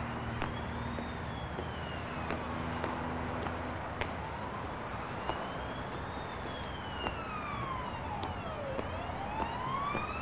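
A police siren wailing slowly up and down over a steady low rumble of city traffic, with scattered light clicks. In the last few seconds a second siren wail overlaps it, one falling while the other rises.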